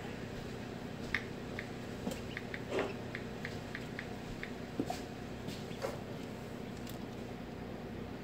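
A hatchling peeping from inside a pipped egg: a run of short, high peeps, about three a second, followed by a few faint clicks, over a steady low hum.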